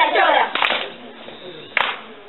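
Two sharp hand claps about a second apart, as children's singing ends at the start.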